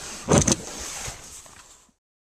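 Handling noise on the camera's microphone as it is grabbed: rustling, with two sharp bumps about half a second in, then the sound cuts off abruptly.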